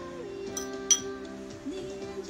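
A metal spoon clinks sharply against a ceramic bowl about a second in, with a fainter clink just before, over soft background music with long held notes.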